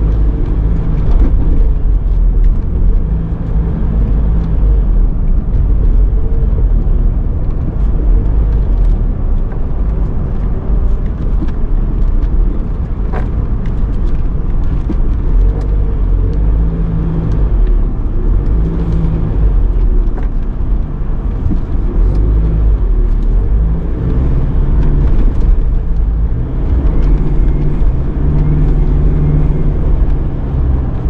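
Inside a moving car: a steady low rumble of engine and tyre road noise as the car drives along city streets.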